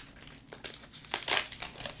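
Clear protective plastic wrap crinkling as it is handled and peeled off a new iPad, in a few short crackles that grow more frequent in the second half.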